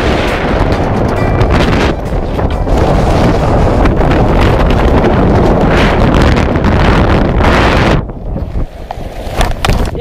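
Wind rushing over the camera microphone during a tandem parachute landing approach, cutting off abruptly about eight seconds in at touchdown. After that come a few short knocks and scuffs as the pair lands and slides on the grass.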